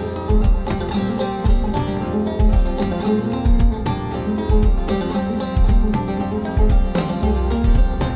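Band playing the instrumental introduction of a Turkish folk semah: a bağlama (saz) picks the melody over a steady, regular low beat of drums and bass.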